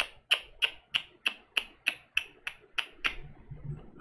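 A run of about a dozen sharp, evenly spaced clicks or taps, about three a second, stopping about three seconds in.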